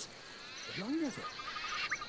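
Steady high-pitched insect chirring, a wildlife ambience bed, with a short spoken 'No' about a second in.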